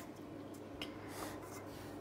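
Faint light rustling of a hand brushing over a 30 cm woofer's cone and cloth surround, with a single light tick about a second in, against quiet room tone.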